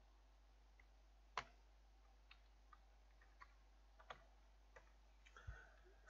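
Faint, scattered computer keyboard keystrokes: about ten separate clicks at an uneven pace, with one louder keystroke about a second and a half in.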